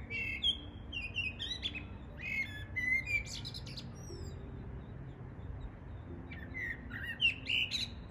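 Male common blackbird singing: two phrases of gliding whistled notes, each ending in high thin twittering, with a pause of about two and a half seconds between them.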